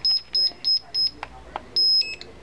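Smith & Nephew Exogen 4000+ ultrasound bone-healing unit beeping: short high beeps about three a second, then after a pause one longer beep near the end as its power button is held and the unit switches off.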